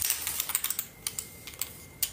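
A quick, irregular run of light clicks and taps, like typing.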